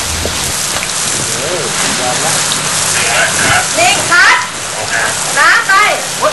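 Heavy rain pouring down steadily, with people's voices calling out over it from about a second and a half in.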